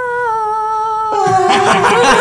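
A voice holding one long, slightly falling note, hummed or sung as a mock dramatic sound effect. About a second in, several voices break out laughing over it.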